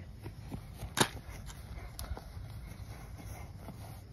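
Toy rifle clicking as it is fired: one sharp click about a second in and a fainter one about a second later, with a few light clicks over a low steady rumble.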